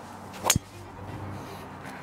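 Titleist TSR titanium driver striking a golf ball off the tee: one sharp crack about half a second in.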